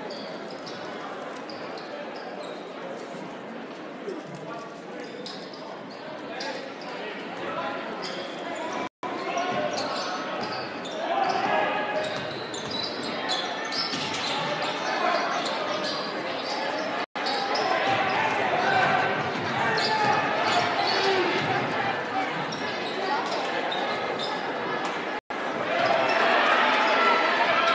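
Basketball game sounds in a large, echoing gym: a ball bouncing on the hardwood court amid indistinct voices of players and spectators, getting busier after about ten seconds. The sound cuts out briefly three times.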